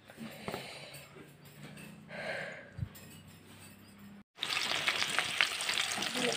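Soft squelching of battered vegetable strips being mixed by hand in a steel bowl. About four seconds in, after a brief gap, this gives way to loud sizzling and crackling as the pieces deep-fry in hot oil in a wok.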